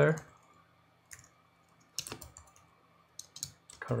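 Computer keyboard being typed on: a few separate keystrokes, then a quick run of several keys near the end.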